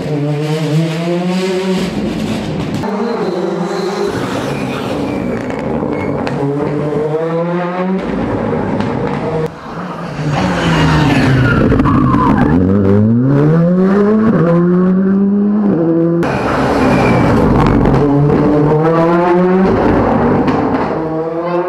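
Rally cars at full stage speed: engines revving hard and climbing through gear changes, pitch dropping at each shift. About halfway through, a car's engine pitch falls sharply, then climbs steadily again.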